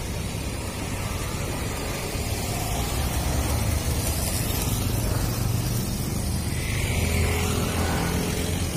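A car and a motorbike driving past close by, their engine and tyre noise a steady rumble that swells about three seconds in.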